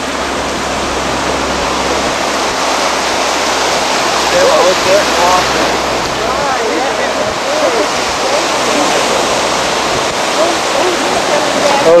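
Ocean surf washing onto the beach: a steady rushing hiss that swells a little about a third of the way in, with faint voices in the background.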